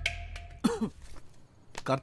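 A person's short vocal sounds: one brief falling-pitched sound about two-thirds of a second in and another near the end.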